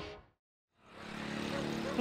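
Music fades out, then after a brief silence a motor scooter's engine fades in and grows steadily louder as it rides past.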